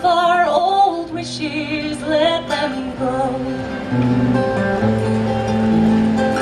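A woman's voice singing long, held notes over an acoustic guitar. The voice drops out about two and a half seconds in, leaving the guitar playing alone.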